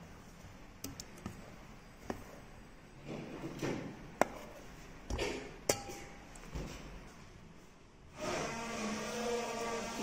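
A steel spoon clinking against a stainless-steel bowl and stirring cold water as lumps of homemade butter are washed: several sharp clinks, the loudest about four seconds in, with sloshing water between. About eight seconds in a steady hum with a few held tones comes in.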